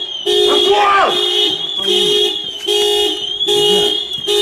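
Car alarm sounding the car's horn in repeated short blasts, about one a second, with men shouting over it.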